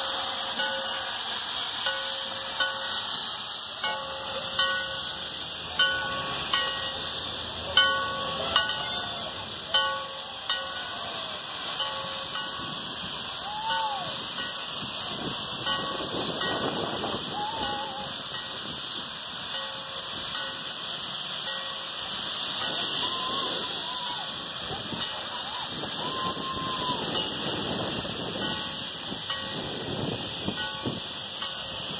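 Steam locomotive hissing steadily as steam vents from low at the front by its cylinders, with a few brief knocks in the first ten seconds.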